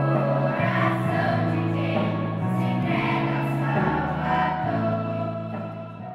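A children's choir sings a Christian song in held notes over steady low accompanying notes, and fades out near the end.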